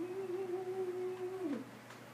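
A man humming one long, steady note that slides down in pitch and breaks off about a second and a half in.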